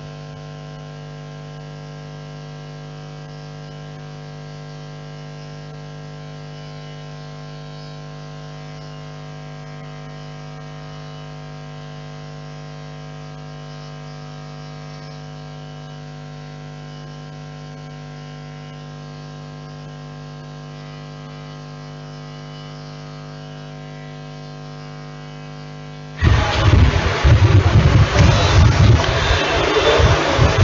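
Steady electrical mains hum with a buzz of evenly spaced overtones, unchanging in level. About 26 seconds in, a much louder, full sound cuts in abruptly.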